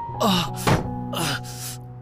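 A man crying out twice in pain, each cry falling in pitch, with a sharp thump between them, over steady background music.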